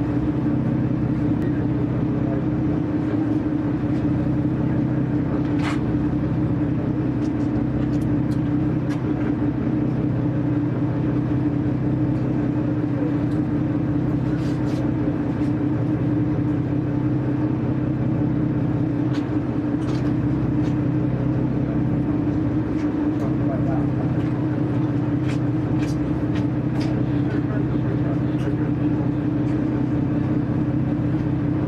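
A steady, unchanging engine drone, with a few faint clicks over it.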